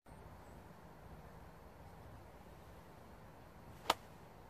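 A golf club striking a golf ball on a full swing: one sharp crack near the end, over a faint steady outdoor background.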